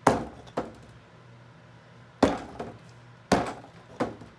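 A paintbrush struck against a thickly painted board, four sharp knocks at uneven intervals, breaking up the paint surface.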